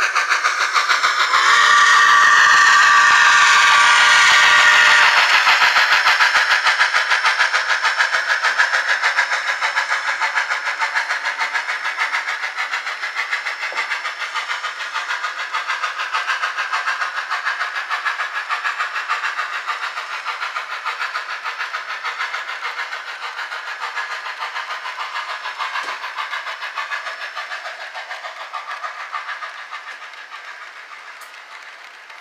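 Soundtraxx Tsunami2 sound decoder in an HO scale brass CNJ 2-8-2 Mikado playing steam locomotive sounds through the model's small speaker. A chime steam whistle is held for about three seconds, starting a second and a half in, over rapid steady exhaust chuffs that slowly fade as the locomotive moves away.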